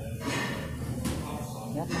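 Treadmill running at a slow walking pace, giving a steady low hum. A short breathy rush comes early on and a single click about a second in.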